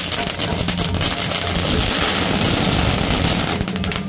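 A string of firecrackers going off in a rapid, continuous crackle, so dense it merges into one loud hiss, with a few more separate cracks near the end.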